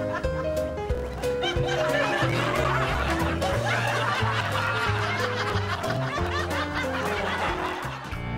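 Light comedic background music with many people laughing over it, the laughter swelling about a second and a half in and running through most of the rest.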